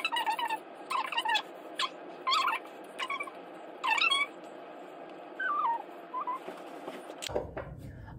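A pet's short, high-pitched cries, about a dozen in quick succession, coming roughly twice a second over the first half. A few shorter gliding cries follow past the middle.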